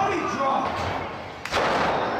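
A wrestler hitting the wrestling ring's canvas: one loud slam about one and a half seconds in.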